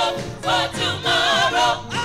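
Gospel choir singing loud, sustained phrases in harmony, with a lead singer on a microphone in front.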